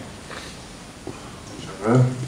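Quiet hall room tone with a few faint knocks, then near the end a person's drawn-out voiced sound, rising in pitch, carried through the hall's microphone as a questioner starts to speak.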